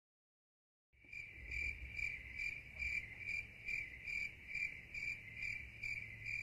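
Dead silence for about a second, then a cricket chirping steadily, about two and a half chirps a second: the stock crickets sound effect laid over footage that has no audio.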